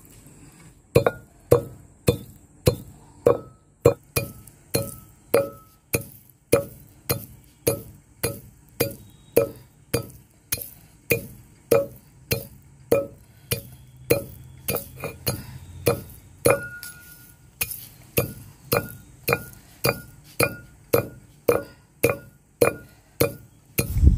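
Iron pestle pounding dry roasted whole spice seeds (coriander, cumin, fennel, fenugreek) in an iron mortar (imam dasta). It strikes steadily, nearly twice a second, with a short metallic ring on each blow, starting about a second in.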